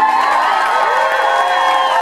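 Audience cheering and whooping at the end of a song, many voices at once with long rising and falling whoops.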